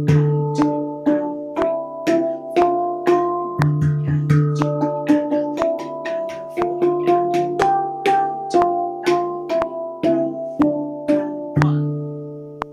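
Handpan played in a steady pulse, about two struck notes a second, hands alternating on each note. Each strike rings on with its own pitch, and a deeper low note sounds at the start, about a third of the way in, and near the end.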